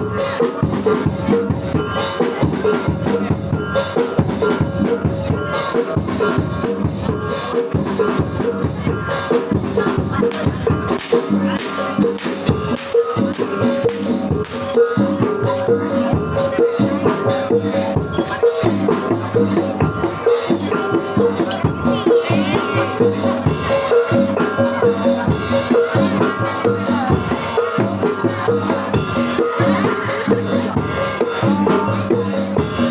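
A live Javanese jaranan gamelan ensemble plays a fast, steady rhythm on kendang drums and small kettle gongs, with ringing gong tones.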